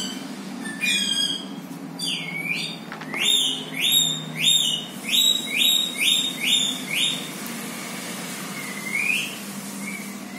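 A bird calling: a quick run of about seven short, high, repeated calls, each dropping in pitch, with a few scattered calls before it and one near the end.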